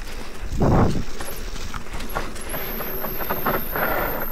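Mountain bike descending a rough dirt forest trail: tyres rolling over loose ground and the bike clattering and rattling in quick irregular clicks, with a louder thump a little under a second in.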